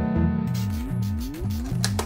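Background music with a repeating figure of notes that slide down and up in pitch, about three a second.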